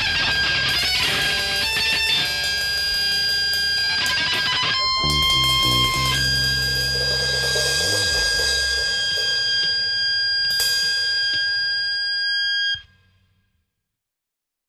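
Punk rock recording: distorted electric guitar and bass playing the song's closing bars, then a long ringing final note. It cuts off abruptly about thirteen seconds in.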